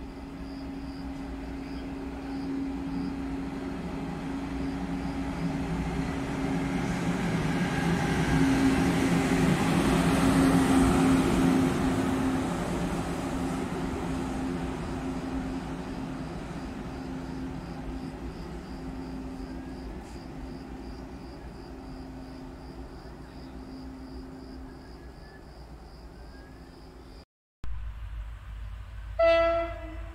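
A single locomotive running light through a station without stopping: a steady engine tone that grows louder as it approaches, peaks as it passes about ten seconds in, then fades as it moves away. After a cut near the end, a short loud train horn blast.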